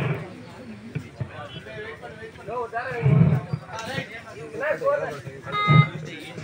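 Voices of players and spectators calling out on and off around an outdoor kabaddi court. A short, steady pitched tone sounds just before the end.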